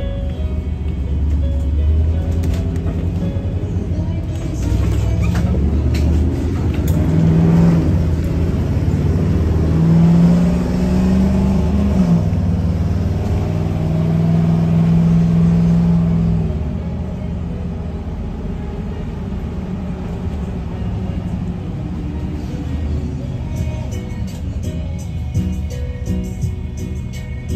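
Engine and road noise inside a moving small transit bus, a steady low rumble that grows louder for the first half and then settles lower. Music plays over it.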